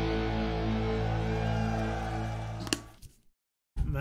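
A rock band's live recording ends on a held final chord of electric guitars and band, ringing steadily and then fading out about three seconds in, ending with a click before a brief silence.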